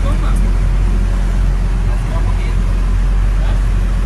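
A boat's engine running with a steady low rumble.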